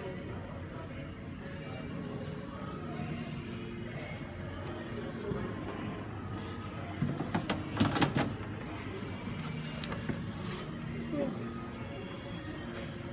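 Knocking and clattering of a front-loading washing machine's door and plastic detergent drawer being handled, loudest in a burst about seven to eight seconds in, over shop background music and faint chatter.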